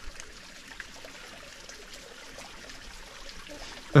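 Steady rushing background noise in a pause between words, even and unchanging throughout.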